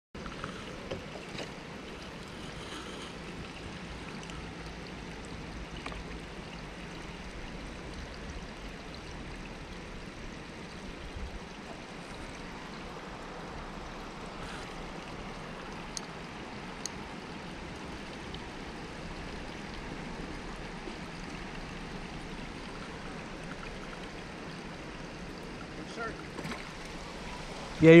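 Steady outdoor background noise, an even hiss with no single clear source, with a few small clicks scattered through it.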